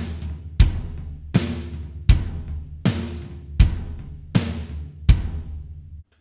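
Drum kit playing the standard basic rock beat with the right hand moved from the hi-hat to the floor tom: eighth notes on the floor tom, kick on one and three, snare on two and four. It gives a deep, booming groove, with a strong hit about every three-quarters of a second, and it stops just at the end.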